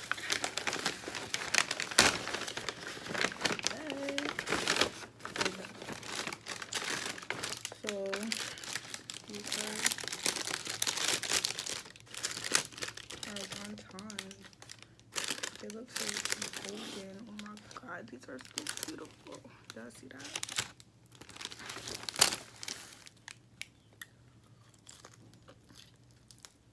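Plastic and paper takeout bags crinkling and rustling as they are pulled open and handled, with sharp crackles, loudest about two seconds in and again near the end.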